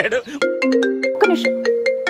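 Mobile phone ringing with a melodic ringtone, a tune of short stepped notes that starts about half a second in.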